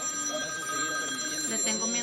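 Telephone ringing with a steady electronic tone of several pitches, an incoming call; the ring cuts off about one and a half seconds in.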